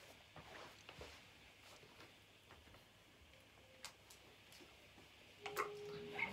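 Near silence, broken only by faint scattered clicks and taps of handling noise, with one sharper click about four seconds in. Near the end a faint steady tone comes in.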